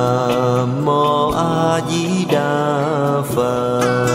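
Buddhist devotional chant sung as music, a voice holding long notes that step from pitch to pitch over instrumental accompaniment.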